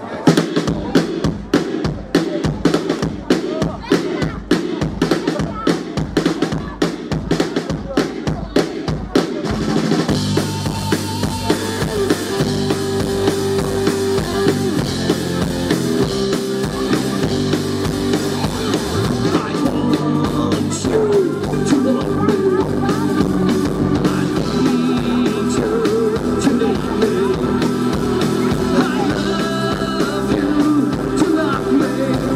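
Live rock band playing a rock classic: a steady drum-kit beat alone opens, and about ten seconds in electric guitars and bass come in with the full band.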